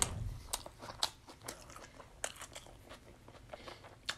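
Close-miked chewing of a mouthful of Whopper Jr. burger, with soft mouth noise near the start and sharp wet clicks about every half second.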